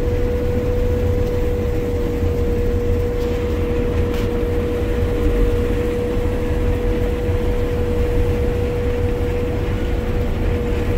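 Combine harvester running steadily while cutting soybeans, heard from inside the cab: a constant low engine and threshing drone with a steady whine over it.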